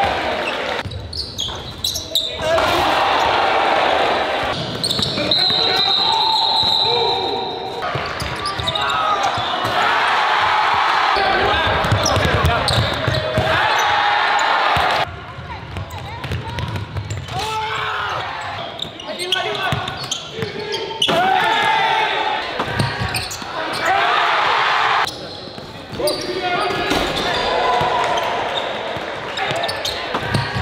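Live basketball game sound in a school gym, in short edited cuts: a basketball bouncing on the hardwood floor, mixed with voices and crowd noise echoing in the hall.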